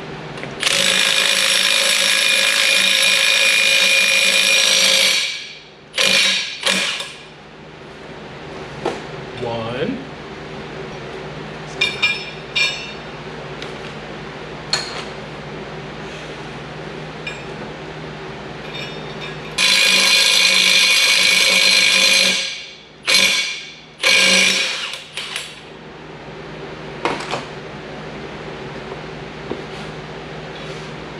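Cordless impact wrench running in two long bursts, about four seconds and then about three seconds, with a few short blips after each. It is spinning a lug nut against a washer and spacer to pull new extended wheel studs into the axle flange.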